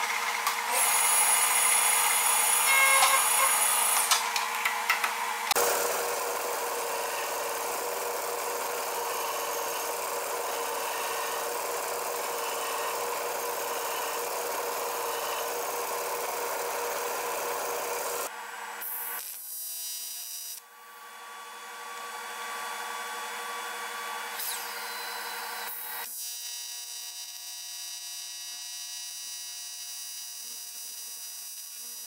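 Aluminium being machined on a metal lathe, with high-pitched whines from the cut, then a belt sander running steadily as an aluminium part is ground on it. Near the end an AC TIG welding arc buzzes steadily.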